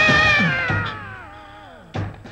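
A man's long drawn-out wailing cry, loud and high at first, then sliding slowly down in pitch as it fades away.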